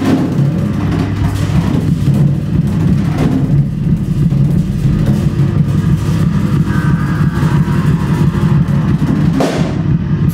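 Live improvised duo for drum kit and electric bass with electronics. Busy, free-time drumming with cymbal crashes runs over a dense, steady low drone from the bass and electronics.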